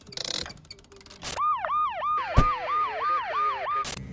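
A rapid siren-like electronic wail, each cycle rising and falling, repeating about three times a second, set in an advertisement's sound design. Before it come short noisy bursts and a whoosh about a second in, and a sharp knock cuts through partway along.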